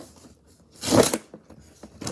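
Plastic wrapping on a Mini Brands toy capsule being ripped: one short tear about a second in, with faint rustling of the wrapper around it.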